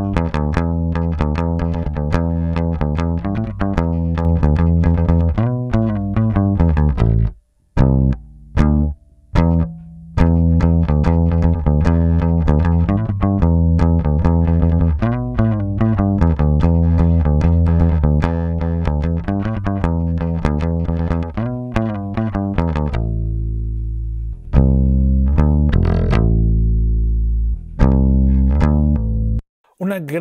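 Electric bass recorded direct (DI) playing a plucked bass line, with short breaks about eight seconds in and long low notes near the end. It plays first as a thin-sounding track with little low end. Partway through, the Crane Song Peacock vinyl-emulation plugin in Deep mode is switched in from bypass to fill out the bass.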